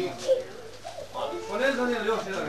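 Indistinct talking by people in the room, with a low voice in the second half and a brief click about a third of a second in.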